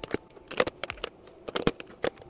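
Plastic eyeshadow palettes and compacts clicking and knocking against each other as they are handled and slid into a drawer, an irregular run of sharp clicks.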